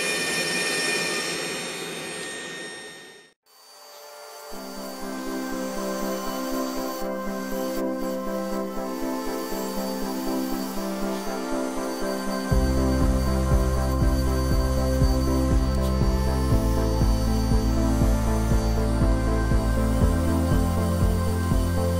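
A power-carving handpiece and dust collector running with a steady whine, fading out within the first three seconds; then background music with a steady beat plays, a bass line coming in a little past halfway.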